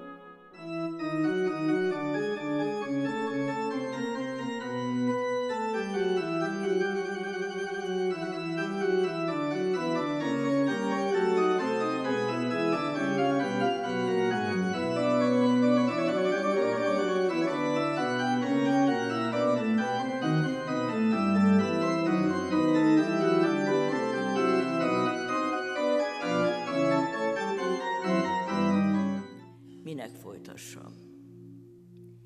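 Organ played from a multi-manual console: full sustained chords with moving lines of notes, at a steady level. It starts about a second in and stops shortly before the end.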